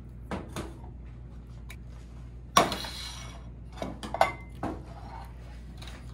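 A spoon scrapes and knocks against a can and an enamelled cooking pot as cream of celery soup is spooned into the pot. A louder clank that rings briefly comes about two and a half seconds in, followed by a few lighter clinks.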